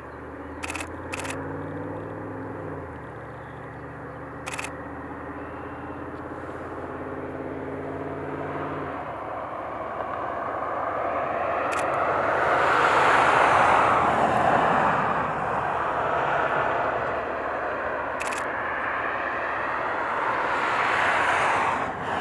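Passing road traffic: a steady engine hum for the first half, then the noise of a passing vehicle swelling to a peak about halfway and fading, with a second swell near the end. A few sharp camera shutter clicks.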